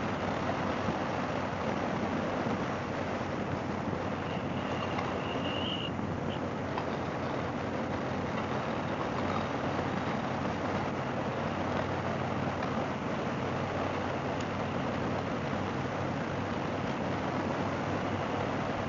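Harley-Davidson Fat Boy V-twin running steadily at cruising speed, mixed with wind and road noise.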